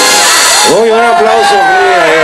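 Loud dance music with shakers and drums cuts off under a second in, and a voice calls out with one long, wavering, drawn-out shout over the crowd.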